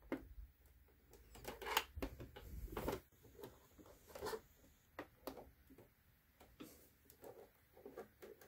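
Faint, scattered small clicks and taps of a sewing machine needle and needle clamp being handled by hand as the needle is swapped for a denim needle.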